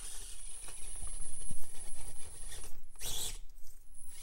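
Axial AX24 micro RC crawler's small electric motor and gear drivetrain running, with a faint high steady whine that stops a little past halfway and comes back near the end. A short scraping rush comes about three seconds in.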